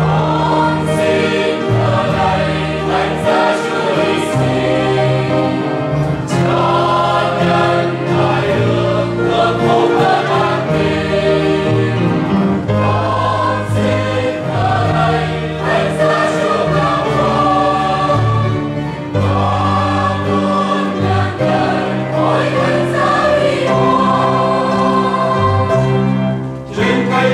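Mixed church choir singing a Vietnamese Catholic hymn in harmony, with held chords, accompanied by piano and guitar.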